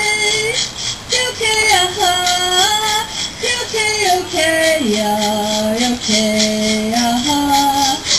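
Voices singing the melody of an Abenaki feather dance song, long held notes stepping up and down, over a steady beat.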